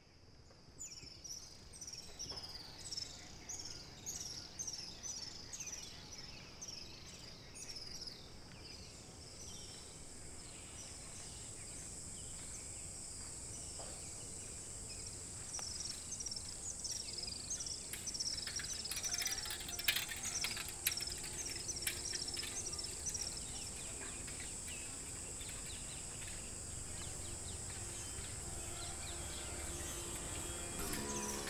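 Rural outdoor ambience: a bird repeats short falling chirps over and over, and a steady high insect drone joins about eight seconds in. The chirping pauses for a few seconds in the middle and then returns, while the whole soundscape grows gradually louder.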